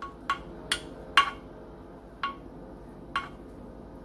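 A metal utensil clinking against a glass baking dish as it digs into a pan of cheesecake brownies. There are about six short, irregular clinks, some with a brief ring, and the loudest comes about a second in.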